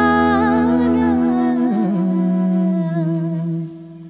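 The closing note of a Hindi film song: a long held vocal note with a wavering ornament, stepping down to a lower held note, over sustained instrumental accompaniment. The music dies away shortly before the end.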